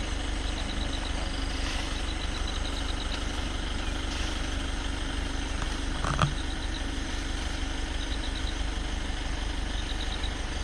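A safari vehicle's engine idling with a steady low hum. Short runs of fast, high-pitched ticking come several times, and there is a single knock about six seconds in.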